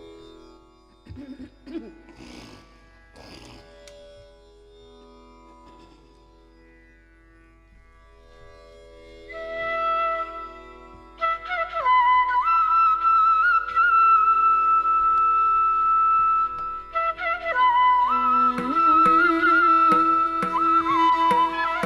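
A tanpura drone alone at first, then the Carnatic bamboo flute comes in about nine seconds in, holding long notes with ornamented slides, opening a piece in raga Gaulipantu. Drum strokes join near the end.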